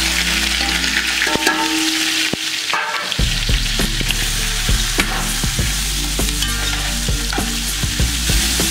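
Sliced onions sizzling in hot oil in an aluminium pot, with a metal spatula stirring them and knocking and scraping against the pot. The knocks come thicker from about three seconds in as the stirring gets going.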